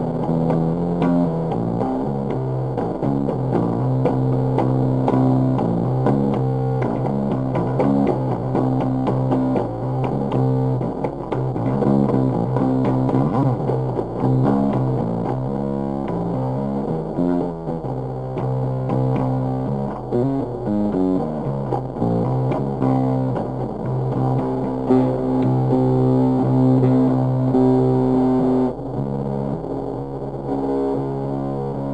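Ibanez GSR205 five-string electric bass, tuned to C standard and played through a Bass Big Muff Pi fuzz pedal: a slow, heavily distorted jam riff of long, sustained fuzzy notes, with sliding notes about 13 and 20 seconds in.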